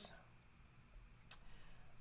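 A single sharp click a little past the middle of a quiet pause, over faint room noise.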